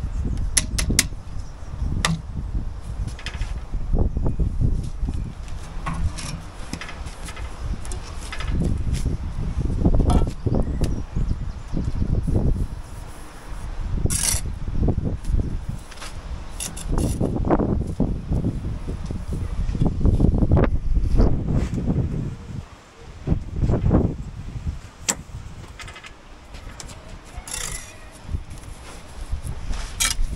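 Bricklaying work: scattered knocks and clicks of bricks being set and a steel trowel tapping and scraping, over an uneven low rumble.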